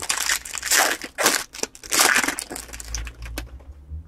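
Foil-plastic wrapper of a Topps baseball card jumbo pack being torn open and crumpled by hand: a run of irregular crinkling crackles.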